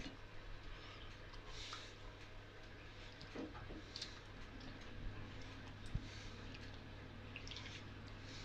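Faint wet squelching and dripping as a marinated sea bass fillet is dipped and turned by hand in thin gram-flour batter in a glass bowl. A steady low hum runs underneath, and there is one sharp click about six seconds in.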